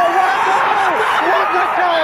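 An excited football commentator's voice from an old match broadcast, over the many voices of a cheering stadium crowd as a goal goes in.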